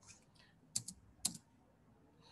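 Faint clicks of computer keys being pressed: a couple of light taps early on, then two sharper double clicks about half a second apart near the middle, advancing a presentation slide.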